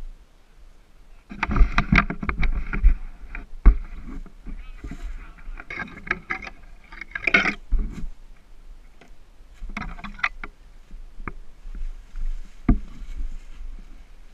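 Dry leaves crunching and rustling in irregular bursts, with scrapes and a few sharp knocks, as a fallen dirt bike is handled and dragged upright on a leaf-covered rocky slope.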